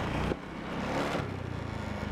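Motorbike engine running as the bike rides along, with wind and road noise on a handlebar-mounted camera.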